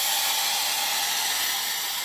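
Polti steam cleaner's hand nozzle jetting steam onto a mattress as a heat treatment against bed bugs: a steady hiss that eases slightly toward the end.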